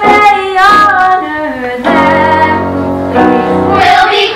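A girl's solo singing voice carrying a melody in long held notes over instrumental accompaniment.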